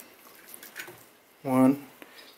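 Mostly quiet room tone with a couple of faint short rustles, then a man says a single word near the end.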